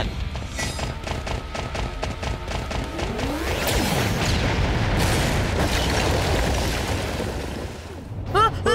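Cartoon battle sound effects over background music: a rapid run of sharp hits in the first few seconds, then a sweeping whoosh into a long rumbling blast as a dinosaur fires a glowing energy beam from its mouth. The blast swells and then fades near the end.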